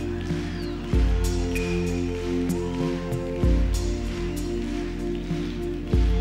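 Live band playing a slow instrumental passage: sustained electronic keyboard chords, with a deep bass note struck about every two and a half seconds and light high ticks.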